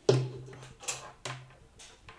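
Heavy metal tailor's shears set down on the cutting table with a sharp clunk, followed by the rustle and swish of paper pattern pieces and fabric being lifted and moved, twice.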